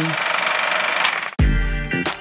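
A steady, fast-fluttering rattle and hiss behind the rating card, cut off suddenly about two-thirds of the way in. A deep bass hit follows and opens the TV station ident's music sting.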